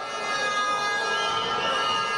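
Sustained droning musical tones, several steady notes held together, with a thin high note that bends about a second in.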